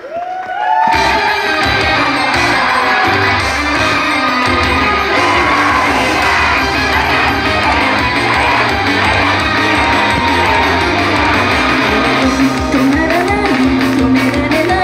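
Live idol-pop music played loud over a stage PA. After a brief lull at the changeover, a new song's backing track comes in about a second in, with the singers' voices and fans in the crowd shouting and whooping along.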